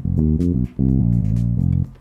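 A freshly recorded riff played back from a sample pad on a Roland FA-06 workstation: a quick run of low, bass-like notes with a brief break in the middle, stopping shortly before the end.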